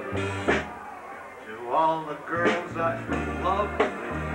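Live band music with a man singing into a microphone over steady bass notes and cymbal. The music softens briefly about a second in, then the singing comes back.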